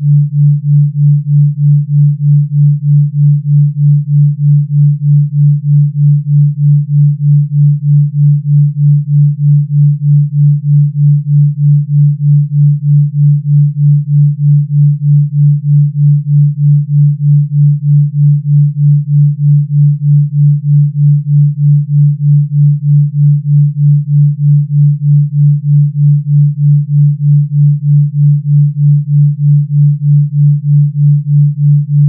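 Pure-tone binaural beat at delta 3.2 Hz: one steady low sine tone whose loudness pulses evenly about three times a second, from the small pitch difference between the left and right channels.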